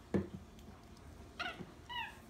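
Capuchin monkey giving short, high-pitched squeaks twice, about a second and a half in, after a single knock near the start.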